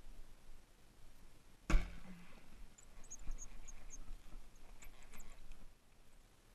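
Bowfishing bow shot: a single sharp snap about two seconds in, the loudest sound, followed by a brief low hum. Faint high chirps and ticks follow in the second half.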